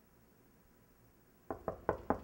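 Knocking on a door: three quick, sharp knocks starting about a second and a half in, part of a short run of knocks.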